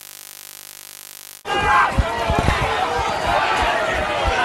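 A steady electrical hum and hiss, then an abrupt cut about a second and a half in to loud, indistinct voices shouting on a rugby pitch, with irregular low thumps.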